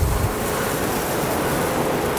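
Thick bone-in beef steak sizzling on a charcoal grill: a steady, loud hiss, with a low thump right at the start.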